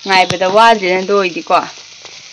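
Green beans frying in a wok, a steady sizzling hiss under a woman's voice. The voice is the loudest sound and stops near the end, leaving the sizzle.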